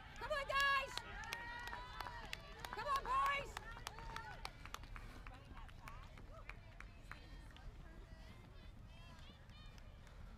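Distant spectators shouting in the first few seconds, then a steady patter of many short ticks as runners approach along the course, with the nearest pair reaching it near the end.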